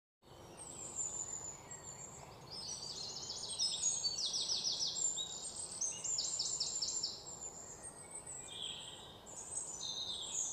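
Several birds chirping and trilling, with quick runs of repeated high notes in the middle, over a faint outdoor background hiss.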